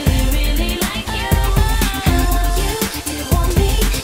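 Pop music with a heavy bass beat.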